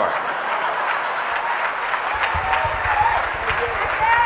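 Audience applause, a steady clatter of many hands clapping, with a faint voice coming in near the end.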